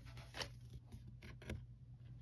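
Faint handling of trading cards: a few soft clicks and light rustles as cards are picked up and flipped over, strongest about half a second in and again near one and a half seconds.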